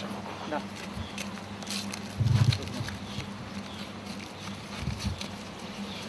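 Rustling and handling of a vacuum splint's fabric as it is wrapped around a forearm, over a steady low hum, with one dull low thump about two seconds in.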